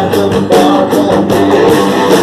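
Live rock band playing loud: drum kit and electric guitar, with a man singing into a microphone.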